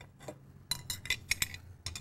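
A run of light metallic clinks and clicks as the metal belt pulley half is worked off a Rotax engine's flywheel by hand, most of them in the second half.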